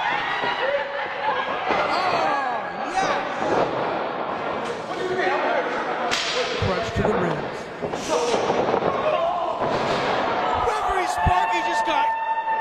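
Scattered shouts and chatter from a small crowd of spectators, broken by several sharp smacks of wrestlers' bodies hitting the ring mat.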